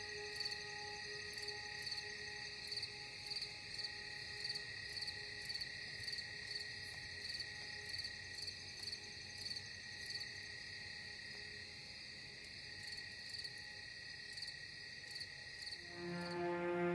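Ambient background music: soft held drone tones under a high, regularly pulsing cricket-like chirping.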